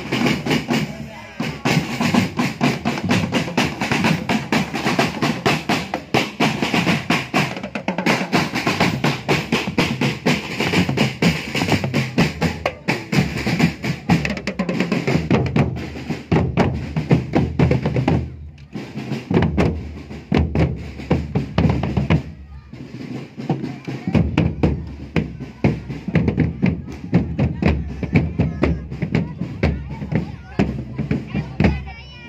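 Marching drum band playing a continuous rhythm on marching bass drums and snare drums, with rolls on the snares. The beat breaks off briefly twice, about two-thirds of the way through, then picks up again.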